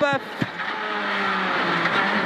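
Renault Clio R3 rally car's naturally aspirated four-cylinder engine heard from inside the cabin, running hard at a steady note through a quick bend, with a brief knock about half a second in and the note dipping slightly near the end.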